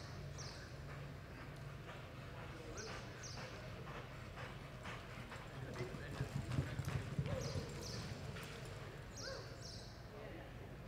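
Horse's hooves beating on soft arena dirt at a lope, a run of muffled thumps that grows loudest about six to seven and a half seconds in, over a steady low hum.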